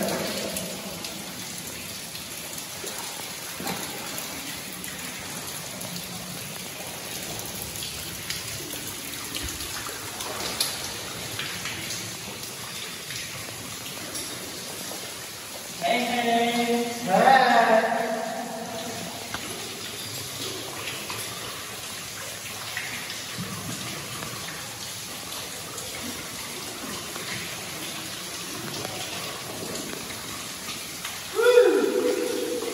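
Steady patter of water dripping and falling like rain through a wet underground mine passage. About sixteen seconds in, a voice calls out briefly.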